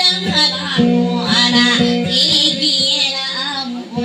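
A woman singing a dayunday song with a wavering vocal line, over a strummed guitar.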